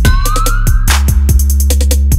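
Dark trap music: a heavy 808 bass line under rapid hi-hat ticks, with a siren-like tone rising in pitch through the first second.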